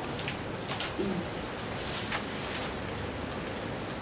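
A dove gives a short low coo about a second in, over steady background hiss.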